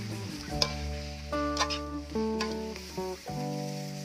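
Metal spatula scraping and clicking against a wok as flat noodles are stir-fried, with a few sharp knocks, under a steady sizzle. Instrumental background music plays throughout.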